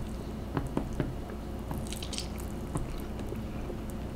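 A man slurping a big forkful of noodles and chewing quietly, with small wet mouth clicks and a short slurp about two seconds in.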